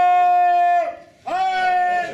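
A man's voice holding a long, steady sung note, breaking off about a second in and then taking up a second held note slightly higher.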